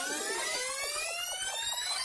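A rising electronic sweep with many overtones, climbing steadily in pitch, used as an edited transition sound effect.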